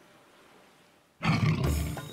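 Faint ambience, then about a second in a sudden loud big-cat roar sound effect, a jaguar's roar, that lasts under a second.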